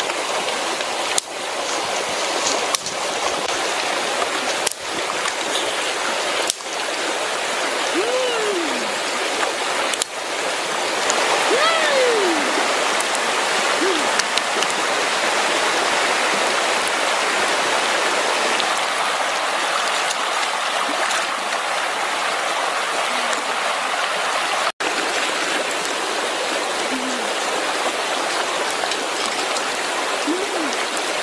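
Steady rushing noise, broken by several abrupt cuts in the first ten seconds. A short gliding call rises and falls about eight seconds in and again about twelve seconds in.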